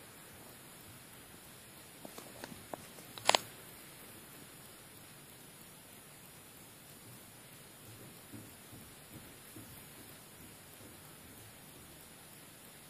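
Quiet room hiss with a few faint clicks, then a single sharp knock a little over three seconds in; a few faint soft sounds follow later.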